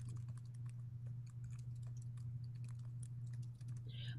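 Faint, irregular clicking of typing on a computer keyboard, over a steady low hum.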